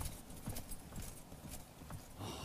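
Horse hooves clip-clopping, a faint, irregular run of knocks several a second.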